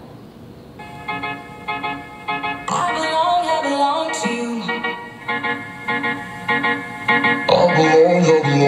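A song played through a DJ PA system of stacked speaker cabinets and subwoofers. It comes in about a second in with short repeated chords, fills out a little later, and gets louder near the end.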